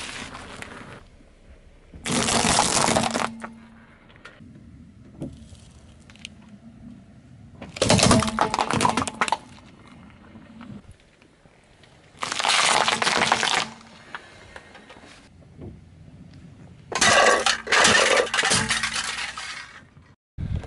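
A car tyre rolling over and crushing objects on asphalt, heard as five loud crunching, crackling bursts about a second or two long each. A faint low hum runs between the crushes.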